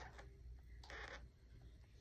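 Faint rustling of paper and fabric being folded and smoothed by hand, with a brief, slightly louder rustle about a second in.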